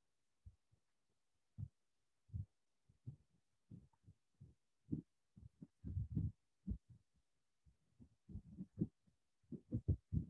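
Faint, irregular, muffled low thumps and rubs of microphone handling noise, growing more frequent in the second half.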